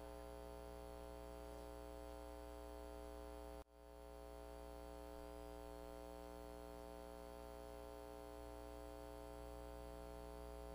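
Steady electrical mains hum with a buzz of many overtones in the recording's audio feed. It cuts out suddenly about three and a half seconds in and swells back within about half a second.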